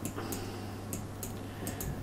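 Computer mouse clicking: a handful of short, sharp clicks spaced irregularly, over a steady low hum.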